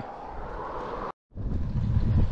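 Steady low outdoor rumble. About a second in it cuts out in a split-second dropout, then gives way to louder wind buffeting on the action camera's microphone as the bike is ridden.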